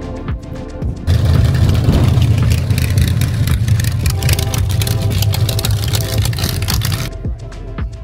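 Hot rod coupe with open exhaust headers driving by, its engine running loud for about six seconds, starting and stopping abruptly about a second in and a second before the end, over background music.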